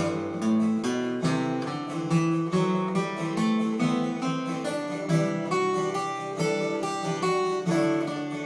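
Acoustic guitar picking a single-note scale line in first position in the key of G, moving note by note, with strummed chords of the progression sounding underneath.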